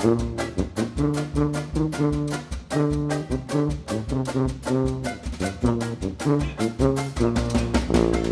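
Instrumental swing jazz: a brass section plays held chords over a steady beat.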